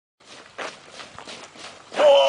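Footsteps of a group of soldiers running, boots striking the ground in a loose, irregular patter, fairly faint.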